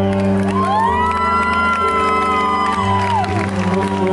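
Upright piano playing held chords live, with a long high wordless voice rising, holding and falling away over it from about half a second in, and some crowd cheering.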